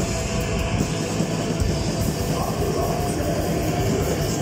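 Live metal band playing loudly through a club PA: distorted electric guitars over a drum kit in one dense, unbroken wall of sound.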